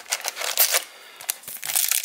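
Foil wrapper of a baseball card pack crinkling as the pack is pulled out of its box and handled, in two spells with a brief lull near the middle.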